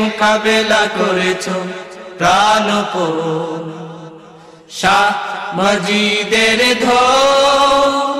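A solo voice singing a Bengali devotional song in praise of a spiritual guide, in long drawn-out, wavering notes. The line fades away from about three seconds in and the singing starts again just before the five-second mark.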